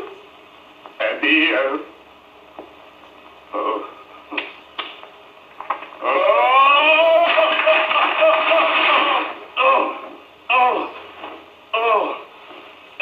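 A man crying in comic fashion on an old, tinny film soundtrack: a few short sobbing bursts, then a long wailing cry about six seconds in that rises in pitch and is held for about three seconds, followed by more short sobs.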